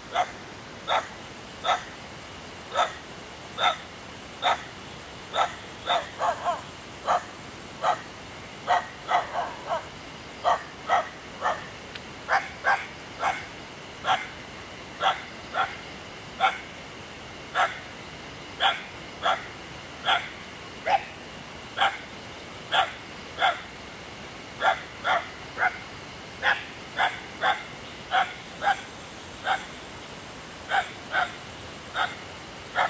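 An animal calling over and over in short, evenly paced calls, one or two a second, with a steady faint high whine underneath.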